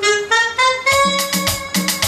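Instrumental intro of a song's backing track: a quick run of rising notes, then a held high note over an even, rhythmic chordal accompaniment.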